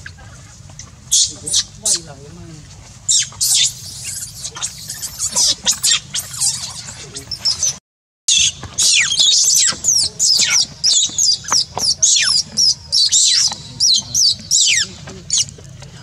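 A baby macaque screaming in distress after being kicked: a rapid run of shrill, high-pitched cries, many falling sharply in pitch, with a short break about eight seconds in.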